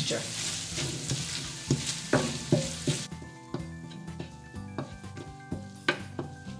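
Onion and tomato masala sizzling in hot oil in a nonstick pan while a wooden spatula stirs and scrapes through it, being sautéed until the oil separates. About halfway through the sizzle drops away, leaving soft background music and a few spatula strokes.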